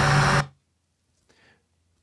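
Library sound effect of a small Honda car driving past, played back: a steady engine hum with a wide hiss that cuts off abruptly about half a second in. Its pitch stays level with no Doppler drop, so it doesn't sound very convincing as a pass-by.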